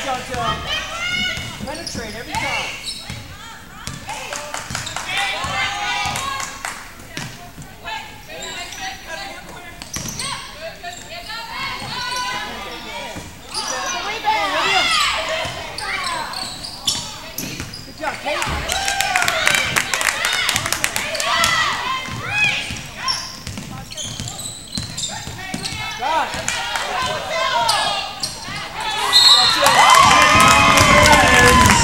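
Basketball dribbled on a hardwood gym floor during a game, with players and spectators calling out.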